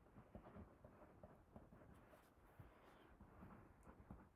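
Near silence, with faint scratching and small ticks of a pen writing on a paper price tag.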